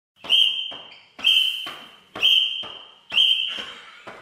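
Four sharp, high-pitched tones repeat evenly about once a second, each starting abruptly and fading away; this is an edited intro sound effect.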